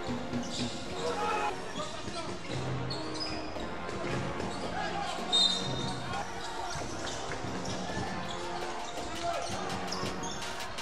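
Basketball game sound from the arena: a ball bouncing on the court, with voices and music in the background.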